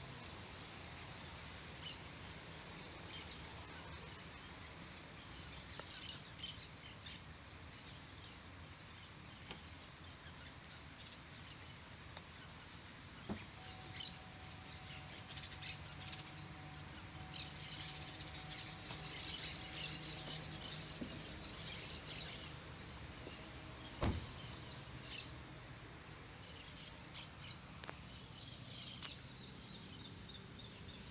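Faint, continuous high chirping of many small birds, with scattered small ticks. A faint steady tone sounds through the middle stretch, and a single sharp knock, the loudest sound, comes about four-fifths of the way through.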